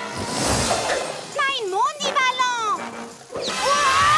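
Cartoon soundtrack: action score music under wordless cries and yells from the characters, with a rushing swoosh in the first second.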